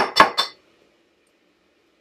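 Metal tuna can clinking against a bowl as the tuna is emptied out: three quick clinks in the first half second.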